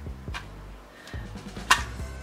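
Background music with a low bass line and a light drum beat. A single sharp click stands out near the end.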